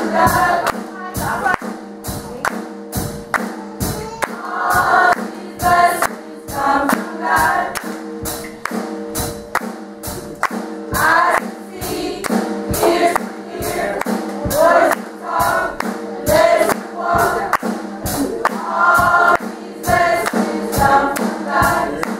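Youth gospel choir singing, with sharp percussive strokes on the beat about twice a second and held low notes underneath.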